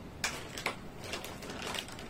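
Close-miked eating sounds: scattered short, wet clicks of chewing and mouth smacks, a few a second, while a person also sips a drink.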